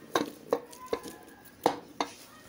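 Wooden pestle pounding a soft cooked meat-and-lentil paste against the bottom of an aluminium pressure-cooker pot: four uneven strikes, the last the loudest, with a faint metallic ring from the pot after some of them.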